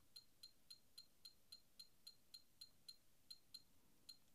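BOSS TU-30 metronome ticking through its built-in speaker at a tempo of 110, about four faint, high electronic clicks a second in an even subdivided pattern.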